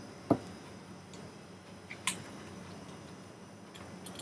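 Computer mouse clicks: one sharp click just after the start and a softer one about two seconds in, over a faint steady background hiss.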